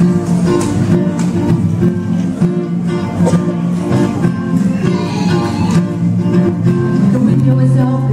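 Acoustic guitar starts playing suddenly, and a woman's voice comes in singing through a microphone about halfway through.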